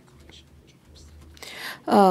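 Low room noise with a faint hum, then near the end a short breathy noise and a woman's voice starting to speak, a simultaneous interpreter on the Russian channel.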